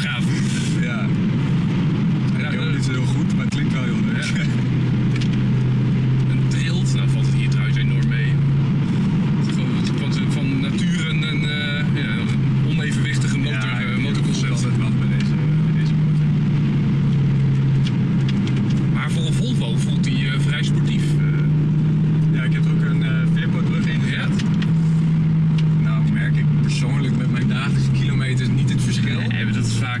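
Volvo C30 T5's turbocharged five-cylinder petrol engine droning steadily at cruise, heard from inside the cabin, its pitch rising and falling gently a few times with small changes in speed.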